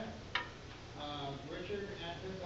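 Indistinct voices talking, with one sharp click about a third of a second in.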